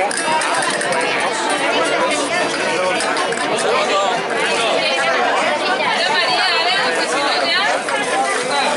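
Crowd chatter: many people talking at once in a street gathering, with no one voice standing out.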